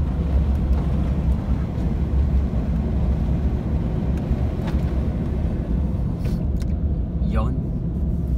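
Steady low rumble of a car driving at speed on an expressway, heard from inside the cabin: tyre and engine noise. A brief voice sounds near the end.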